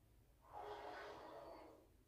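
A woman's single soft breath through pursed lips, lasting about a second, during a face-yoga pose with the head tilted back.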